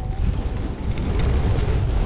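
Wind buffeting the microphone of a camera carried downhill by a skier: a constant low, rumbling roar that flutters in strength.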